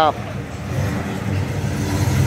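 Oldsmobile 442's V8 engine running steady and low as the car creeps by at walking pace.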